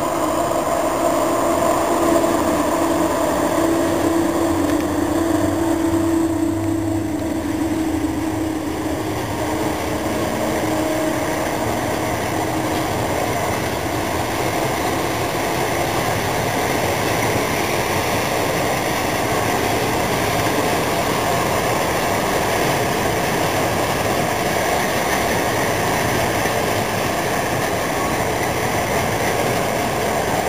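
Electric locomotive hauling a passenger train out of a station. A steady motor hum is heard for the first ten seconds or so as it pulls away, then fades into the even rolling noise of the coaches passing close by.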